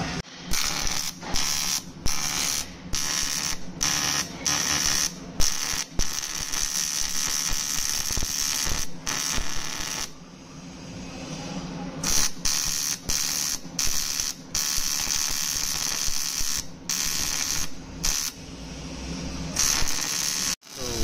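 Electric arc welding on an aluminium 6061 bicycle frame: a hissing, crackling buzz over a steady hum. The arc is struck and broken off again and again, in bursts from about half a second to three seconds long, with a quieter lull about ten seconds in.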